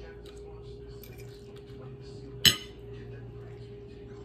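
Small clicks and scrapes of a metal fork, with one sharp, loud clink about halfway through, over a steady low hum.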